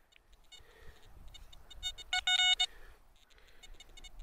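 Metal detector sounding over a dug hole: a few faint short beeps, then a louder pitched tone about half a second long a little past two seconds in, signalling a metal target in the soil.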